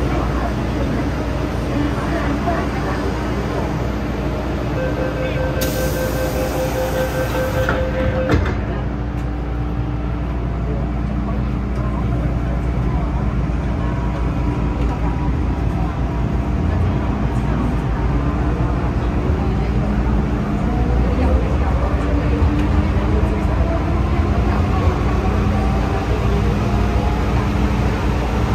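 MTR M-train electric multiple unit at a platform: a steady two-tone door-closing warning sounds for about two seconds and ends in a thud as the doors shut. The train then pulls away, its traction motor whine rising slowly in pitch as it accelerates over a steady low rumble from the running gear.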